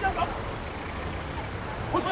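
Outdoor street background with a steady low rumble of road traffic. A brief shouted voice comes just after the start.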